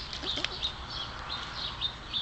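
Small birds chirping in the background, short high calls repeating several times a second, with a single sharp click about half a second in.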